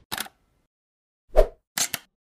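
Animated logo intro sound effects: a brief click just after the start, a louder pop about a second and a half in, then two quick clicks near the end.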